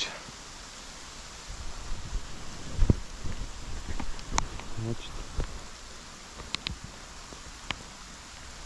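Steady hiss of rain falling on a pine and birch forest, with scattered close clicks, rustles and low thumps, the loudest thump about three seconds in.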